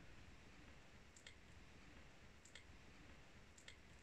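Near silence: room tone with a few faint, brief clicks, two pairs and then a single one near the end.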